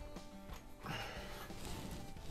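Quiet background music with steady sustained tones, and a faint rustle of handling about a second in.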